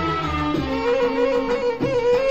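Arabic orchestral music with no singing: a violin section plays a melody over a low bass.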